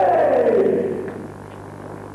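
Loud, drawn-out kiai shout from a karateka sparring, its pitch falling over about a second and a half before it fades. A steady low hum from the old tape runs beneath it.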